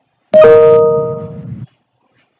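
A short two-note chime, a higher tone with a lower one following at once, starting suddenly about a third of a second in and ringing out for just over a second before cutting off abruptly.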